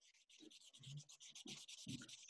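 Near silence, with faint, rapid scratching or rubbing and a few soft low hums.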